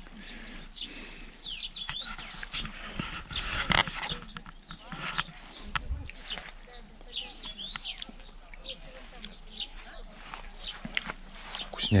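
Small birds chirping over and over in short, quick calls, with brief rustles and knocks close by.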